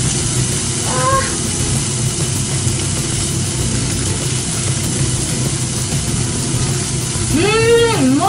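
Hida beef, still partly frozen, sizzling steadily in a frying pan on a gas stove. A short hum of voice about a second in, and a voiced exclamation near the end.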